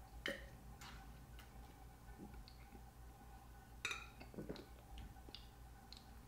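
Faint mouth clicks and smacks as red wine is sipped and swished around the mouth. About four seconds in comes a sharper knock, the wine glass set down on the tabletop, followed by a few more small clicks over a low steady hum.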